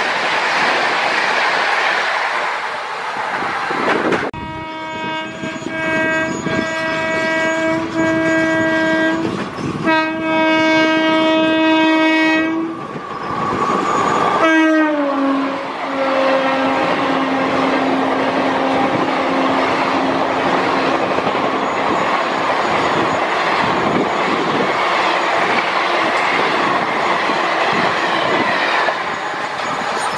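Express passenger trains rushing past at speed, with the steady rush and wheel clatter of the coaches. A locomotive horn gives two long blasts, then sounds again with a falling pitch as the locomotive passes, fading away.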